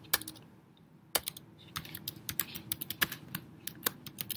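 Typing on a computer keyboard: a quick run of key clicks, a pause of under a second, then steady typing again.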